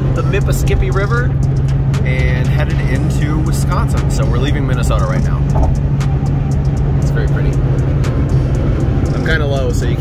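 Steady low engine and road drone heard inside a car cabin at highway speed, with music that has a singing voice playing over it.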